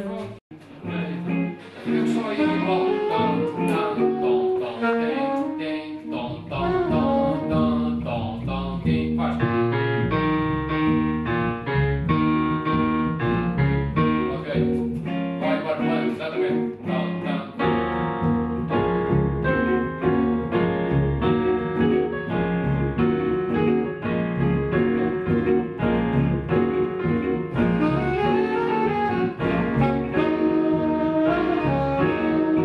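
Small jazz combo rehearsing a tune: electric bass guitar and digital piano with a melody line on top. The music breaks off for a moment right at the start, and the bass comes in strongly about six seconds in, after which the band plays on steadily.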